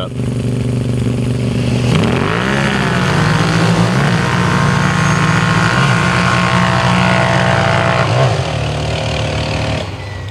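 Two built-up Kawasaki V-Force KFX 700 V-twin quads idle at the line, then launch together about two seconds in and accelerate hard up a sand drag hill. The engine pitch climbs and drops back at each gear change, roughly every two seconds. Near the end they let off and fade as they crest the hill.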